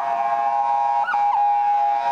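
Ambulance siren sounding a steady, held multi-tone note, with a short pitch blip about a second in.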